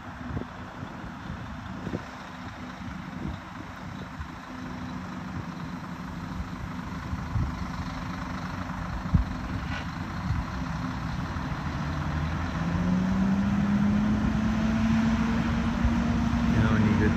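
Heavy truck's diesel engine working hard under load, hauling a houseboat up a boat ramp, with the boat's motors pushing as well. The engine sound builds steadily louder, and about twelve seconds in a drone comes in that rises in pitch and then holds.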